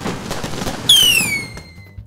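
Fireworks sound effect: a crackling burst, then about a second in a high whistle that falls in pitch and fades.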